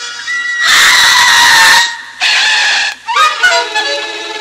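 Sound effects and music from a 1970s children's story record: a loud, harsh screech lasting about a second, a shorter second one, then sustained musical notes near the end.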